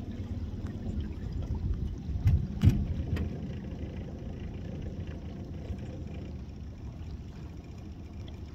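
Lake water sloshing around a bull caribou wading through the shallows, over a low steady rumble, with a few sharp knocks and one louder thump between two and three seconds in.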